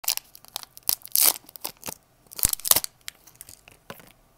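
Close-up crinkling and tearing of a green wrapper as fingers peel it off a piece of gaz (Persian nougat), in irregular crackly bursts. The loudest come about a second in and again around two and a half seconds in, with a few smaller crackles near the end.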